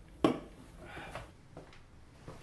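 A drink can set down on a hard kitchen countertop with one sharp knock, followed by softer scuffing.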